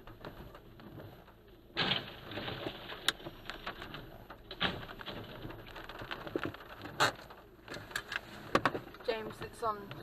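A box van crashing into an old stone roadside wall and overturning onto its side, its brakes having failed according to its driver: a sudden loud crash about two seconds in, then clattering and several sharp knocks as stone and debris land. Short exclaiming voices near the end.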